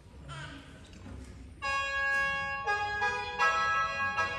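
Bamboo free-reed mouth organ starting to play about a second and a half in, sounding several steady reed notes together as a chord, with the chord changing twice.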